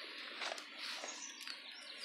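Faint birds chirping, a few short high chirps in the second half, over a soft steady hiss.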